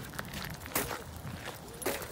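Footsteps at walking pace on a wet gravel path, a few separate steps.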